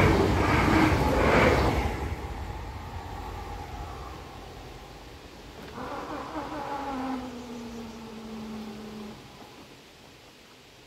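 A České Dráhy RegioPanter electric train rolls through the crossing with a regular clatter and fades away within about two seconds. About six seconds in, the PZA-100 barrier drives whine steadily for about three seconds, slowly falling in pitch, as the crossing barriers rise.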